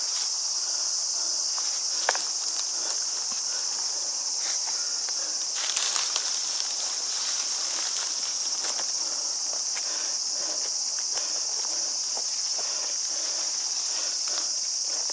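A steady, high-pitched chorus of summer insects, cicadas, over scattered rustles and crunches of dry leaf litter and soil as a gloved climber grips and scrambles up a steep earthen slope. The loudest scuffle comes about six seconds in.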